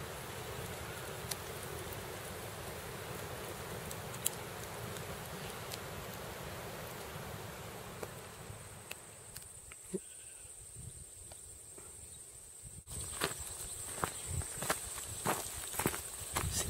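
Quiet outdoor ambience: an even hiss at first, then from about halfway a thin, steady, high-pitched insect buzz, with a run of light clicks and knocks like footsteps in the last few seconds.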